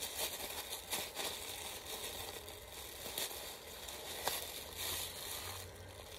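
Faint crinkling and rustling of a plastic package being handled, with scattered small crackles.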